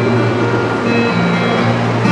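Acoustic guitar playing chords between sung verses of a folk ballad, the held notes changing about halfway through.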